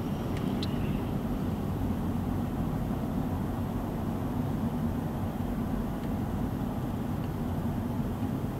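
Steady low road and engine rumble of a car driving at motorway speed, heard from inside the cabin.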